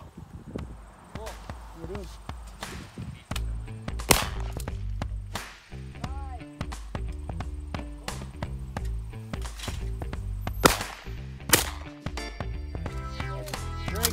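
Shotgun shots fired at clay targets: one about four seconds in and two close together near eleven seconds, each sharp and loud. Background music with a steady bass line starts a few seconds in and runs under them.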